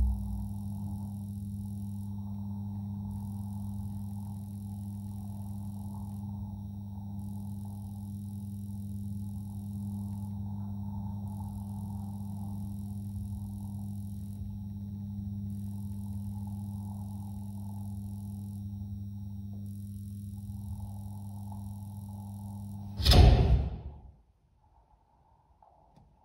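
A steady low electric hum with a high hiss that switches on and off every second or two, part of a musique-concrète performance. A loud, sudden sound comes near the end.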